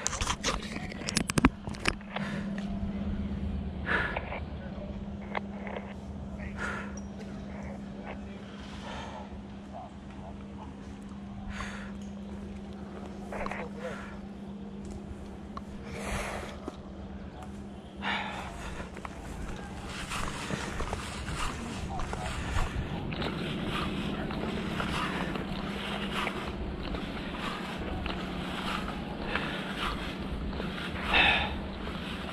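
Knocks and rubbing of a hand on the camera in the first two seconds, then scattered rustles and clicks of clothing and gear being handled, over a steady low hum.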